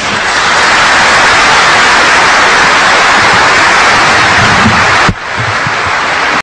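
Audience applauding: a loud, even wash of clapping that drops suddenly to a lower level about five seconds in.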